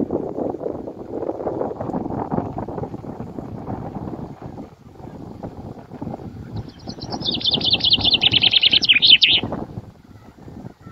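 Wind buffeting the microphone throughout. Past the middle, a small bird sings a fast run of high, rapidly repeated notes lasting about three seconds, the loudest sound here.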